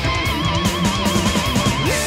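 Heavy metal band playing an instrumental passage: an electric guitar lead holds one note with a wide, even vibrato, then slides up into a new long note near the end, over bass guitar and drums.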